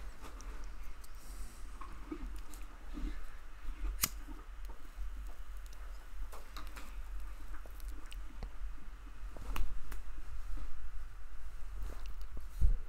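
A hardwood dowel rubbing against a wooden handle spinning in a small lathe, burnishing it smooth, over the steady low hum of the lathe's motor. Scattered sharp clicks, one loud one about four seconds in, and the rubbing grows louder near the end.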